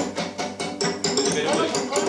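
Cellos and a viola played by tapping the bows on the strings, an even run of short ticks at about four a second, with pitched string notes sounding underneath.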